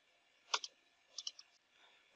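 A few faint, short clicks: one about half a second in and three close together a little past one second.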